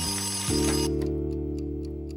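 A cartoon twin-bell alarm clock rings to mark midnight, and its bell cuts off abruptly about a second in. The clock then ticks, about four ticks a second, over a held low chord of music that comes in half a second in.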